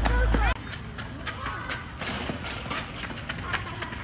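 Children's high voices calling out while playing outdoors, with a few sharp knocks among them. A loud low rumble, like wind on the microphone, cuts off suddenly about half a second in.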